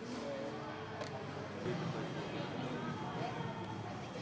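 Indistinct chatter of many voices in a busy café, steady throughout, with a light click about a second in.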